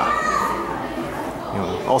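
Background voices of children and adults chattering, with a child's high voice sounding briefly near the start.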